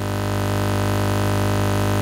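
A steady, low electronic hum that swells slightly over the first half second and then holds level.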